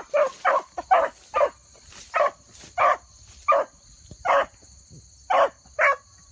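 Dogs barking on the trail of a rabbit they are chasing through brush: a string of about ten short barks, about two a second at first, then spacing out toward the end.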